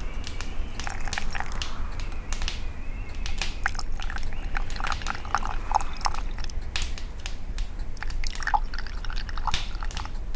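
Wood crackling in a burning wood stove: irregular sharp snaps and pops over a steady low rumble.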